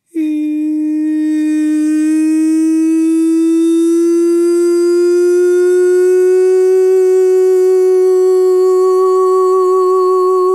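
A woman's voice starts suddenly out of silence and holds one long wordless sung note. Its pitch rises slowly, and a vibrato comes in near the end.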